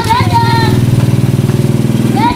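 Motorcycle engine of a becak motor (motorcycle-sidecar tricycle) running steadily as it moves off carrying a load of children. High children's voices call out over it in about the first half-second.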